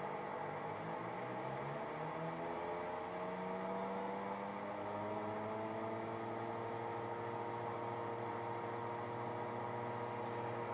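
Simulated twin piston-engine sound of a flight simulator, a steady hum with several tones that rise in pitch over the first several seconds as the throttles are pushed forward to takeoff power, then hold steady.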